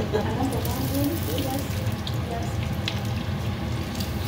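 Slices of bread frying in hot oil in a pan: a steady sizzle with scattered small pops and crackles, while tongs lift and turn one slice.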